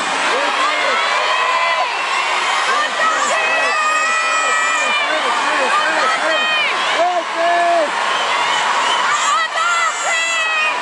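Arena crowd cheering and screaming between songs, with fans close by shouting and squealing over the general din.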